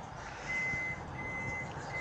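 Vehicle reversing alarm beeping three times, each high, steady beep about half a second long with a short gap between.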